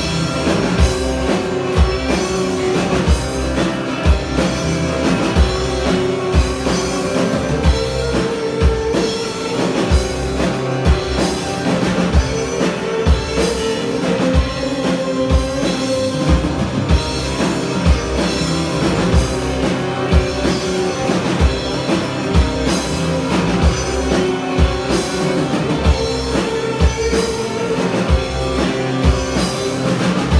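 Live instrumental rock band playing: amplified acoustic guitar and electric bass over a drum kit keeping a steady beat.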